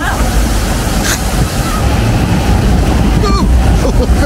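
Rushing water in a log flume channel with a steady low rumble as the log boat is carried onto and up the lift hill's conveyor belt.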